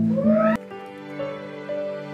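Acoustic guitar and voice with a rising sung slide, cut off abruptly with a click about half a second in. Softer music with long held notes then begins: the edit into the next live recording.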